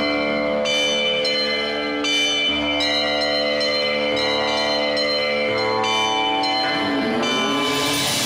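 Background music of held tones with bells struck again and again at uneven intervals. Near the end a snake-like hiss swells up.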